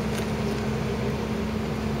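Tow truck engine idling with a steady, even hum.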